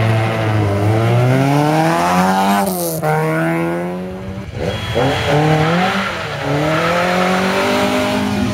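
Rally car engine accelerating hard from the start line, its pitch climbing and then dropping sharply at a gear change about two and a half seconds in. A second rise in engine pitch fills the second half.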